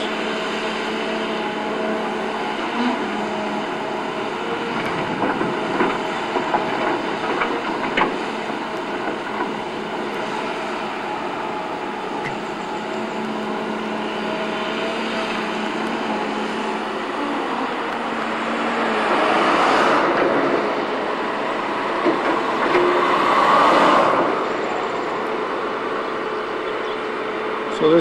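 Tracked hydraulic excavator's diesel engine running steadily as it digs, with a few sharp knocks of the bucket on stone several seconds in. Near the end the engine works harder in two louder surges a few seconds apart.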